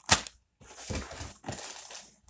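A sharp knock just after the start as an item is set into a cardboard box, then a second or so of packaging rustling as the next item is handled.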